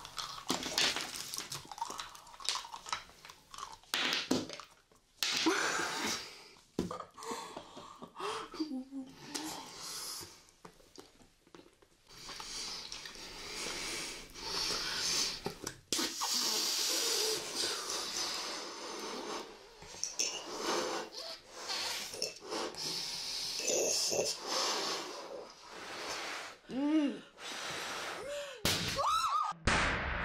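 Bubble gum being chewed by two people, with wet mouth sounds and heavy breathing as they work the gum and blow bubbles, broken by a few sudden clicks. Short voiced sounds come near the end.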